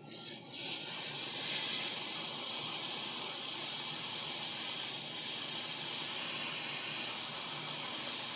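Hot air rework station blowing a steady hiss through its nozzle at 480 degrees. It comes up about half a second in and levels off within a second. The air is desoldering a shorted ceramic capacitor from the laptop motherboard's main power rail.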